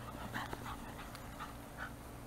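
A puppy giving a string of short, high-pitched whines, about six in under two seconds.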